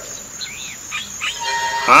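Faint outdoor nature ambience: a single bird chirp about half a second in, over a soft insect-like background hiss.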